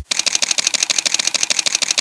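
Camera shutter firing in a rapid continuous burst, about a dozen clicks a second, like a motor-driven SLR.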